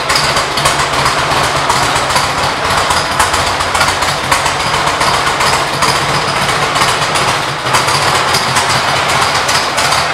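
2005 Harley-Davidson Electra Glide's Twin Cam 88 V-twin engine idling steadily.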